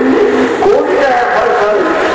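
A man's voice delivering a sermon in a chanting, sung style, with long held notes that slide up and down in pitch and few pauses.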